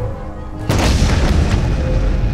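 A sudden deep boom about two-thirds of a second in, under low droning music, leaving a loud rumbling hiss that carries on.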